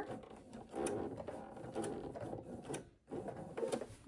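Husqvarna Viking domestic sewing machine stitching around the edge of a fused appliqué, running in a steady stretch, stopping briefly about three seconds in, then stitching again.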